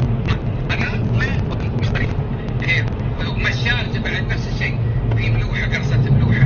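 Busy café ambience: many indistinct voices chattering over a steady low machine hum.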